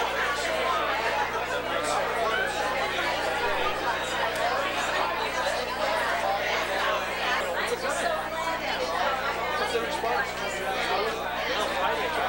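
Overlapping chatter of many party guests talking at once, with no single voice standing out, over a steady low hum.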